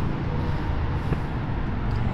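2018 Harley-Davidson Tri-Glide's 107-inch Milwaukee-Eight V-twin idling steadily through aftermarket slip-on mufflers, a low even rumble.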